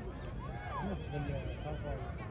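A horse whinnying among a crowd of horses, with men's voices in the background.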